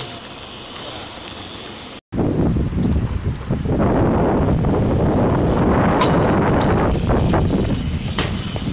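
Wind buffeting the microphone of a moving follow camera, loud and rough, with a few light clicks and rattles from bikes rolling over paving slabs. It follows about two seconds of quieter open-air background that cuts off abruptly.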